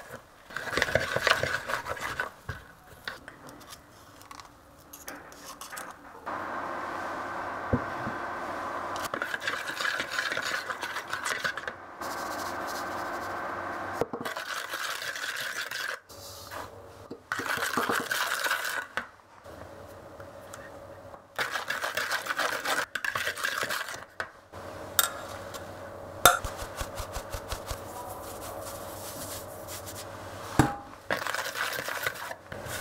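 Small wire whisk beating and scraping softened butter and sugar against a glass mixing bowl, in runs of a few seconds with short pauses. Near the end come a few sharp metallic taps as a stainless mesh sieve is set over the bowl for the flour.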